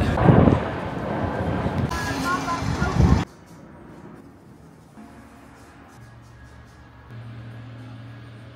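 Busy town-street noise: traffic going by with some passers-by talking, for about three seconds. It then cuts off suddenly to the quiet of a room with a faint steady low hum.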